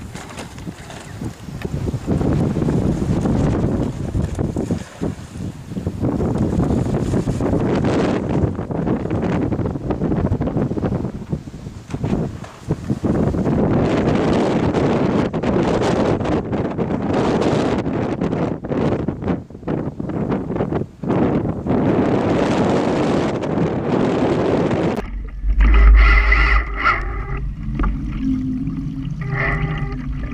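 Gusty wind buffeting the microphone over choppy lake water, in uneven gusts. About 25 s in it changes abruptly to a muffled rushing-water sound with a deep rumble and a few steady tones, as heard from a camera riding on the boat's hull.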